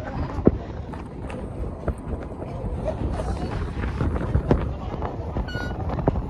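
Indistinct background voices over a steady low rumble of outdoor noise, with a few sharp clicks and a short electronic-sounding tone near the end.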